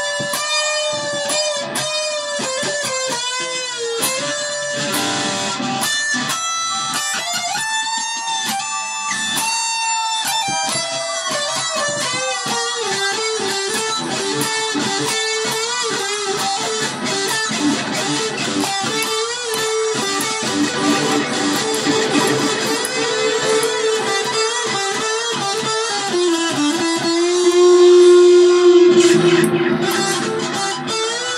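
Electric guitar played through an amp, an offset-body model, picked in changing melodic lines and chords. Near the end one long held note rings out, the loudest moment.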